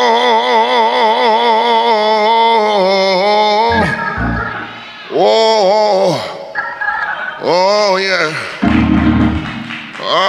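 A man's wordless, sung moan from the pulpit: one long held note with a wide, wavering vibrato for nearly four seconds, then two shorter rising-and-falling notes. Organ chords fill the gaps. It is the groaning moan of a preacher in worship, which he himself takes for a form of speaking in tongues when words fail.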